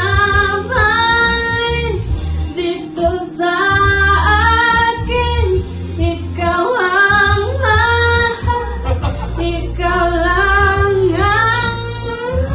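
A girl singing into a handheld microphone, with held notes that bend and slide in pitch, over a low instrumental backing.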